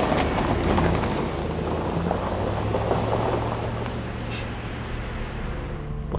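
Cars driving past on a road, a steady rush of tyre and engine noise. It is loudest at the start and eases slightly as they move away.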